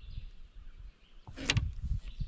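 Small splashes of a hand in river water beside a boat, the sharpest about one and a half seconds in, over a low rumble.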